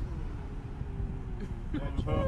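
Steady road and engine rumble inside a moving vehicle's cabin, with a person's voice starting to exclaim in the second half.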